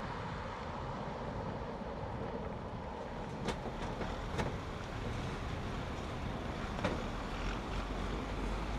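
Steady low running noise of a traffic management truck's engine as it moves slowly along, with a few faint knocks over it.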